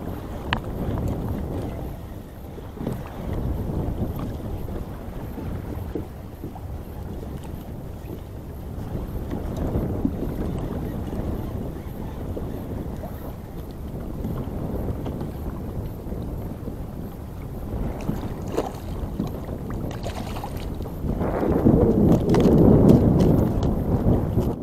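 Wind buffeting the microphone over water lapping against a kayak's hull, growing louder near the end.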